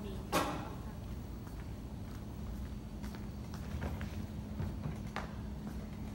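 A sharp knock shortly after the start, then a few faint taps, over a steady low hum.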